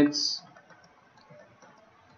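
The end of a spoken word with a short hiss, then faint computer mouse clicks over quiet room tone.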